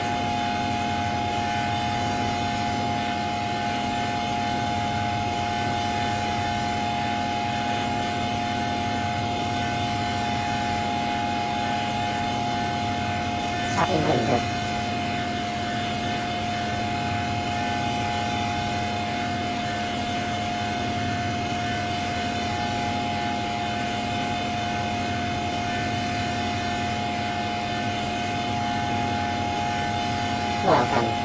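Effects-processed electronic audio from a 'G Major' Windows sound edit: a steady, dense drone of many held tones that does not let up. About halfway through, one quick falling sweep cuts across it.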